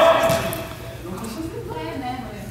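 Indistinct voices of people talking and calling out in a large indoor sports hall, loudest at the very start and fading after half a second.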